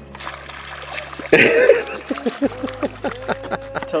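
A sudden splash about a second in as a bullfrog strikes a topwater bass lure on the pond surface, followed by a quick run of short plops and gurgles in the water.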